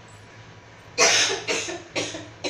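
A person coughing: two quick coughs about a second in, after a moment of quiet room hum.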